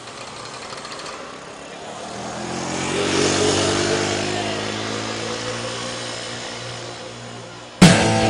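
A quad bike's (ATV's) engine running as it drives past, growing louder over a couple of seconds and then slowly fading. Loud rock music cuts in suddenly just before the end.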